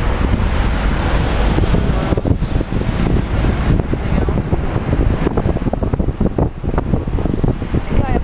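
City street traffic, with cars and an SUV passing close by, mixed with an uneven rumble of wind on the microphone.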